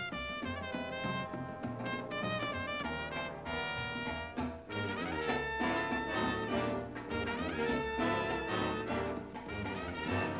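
Up-tempo big-band jazz, with a brass section of trumpets and trombones playing quick, stabbing phrases over a steady low line.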